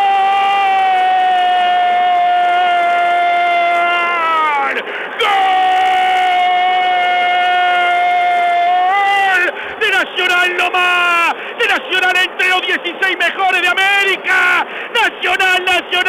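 A Uruguayan radio commentator's drawn-out goal cry, '¡Goooool!': two long held shouts, each dropping in pitch as it ends, then a run of quick shouted bursts. It has the narrow, muffled sound of an AM radio broadcast.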